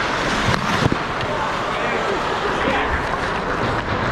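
Ice hockey game heard from a goalie's helmet camera: a steady rink noise of skating and play, with a couple of sharp knocks under a second in and faint distant voices.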